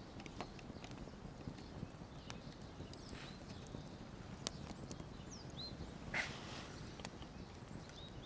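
Campfire crackling with scattered sharp pops, the loudest about halfway through, and a few faint bird chirps near the middle. A short scuffing noise about six seconds in.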